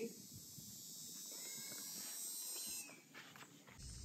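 Faint, steady, high-pitched insect chorus from the trees, fading about three seconds in, with one brief bird chirp about one and a half seconds in.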